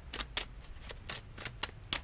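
A deck of tarot cards being shuffled by hand: a quick, irregular run of soft card snaps and swishes, about four a second.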